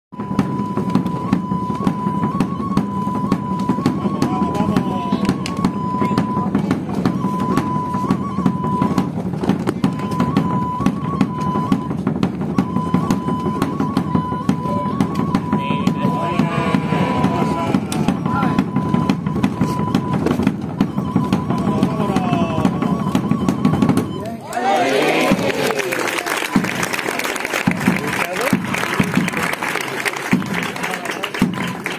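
Drums playing a continuous rapid roll, with a shrill pipe-like tone held mostly on one note above them in broken phrases. About 24 seconds in, the drumming stops and the crowd breaks into applause.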